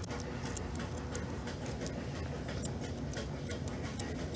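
Grooming scissors snipping the fur on a dog's paw: an irregular run of small, sharp clicks, several each second.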